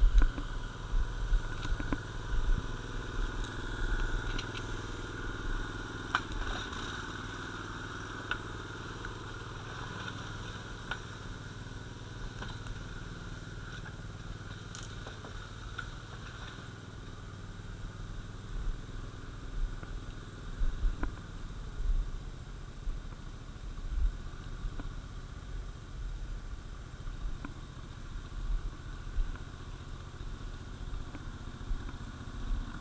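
Engine of a small tracked Kapsen 18 RC remote-controlled forest skidder running steadily as it drags a bundle of beech logs through undergrowth, with scattered knocks and crackles from the logs and brush.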